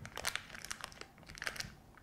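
Thin plastic disposable decorating bag crinkling and rustling as it is handled, in quiet irregular little crackles and clicks.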